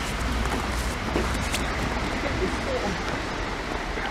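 Wind blowing on the microphone outdoors: a steady rushing noise with a low rumble that eases a little past the halfway point.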